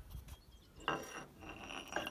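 Splined steel PTO shaft of a John Deere 4020 being handled in its housing: metal scraping and clinking about a second in, then a thin high metallic ring near the end.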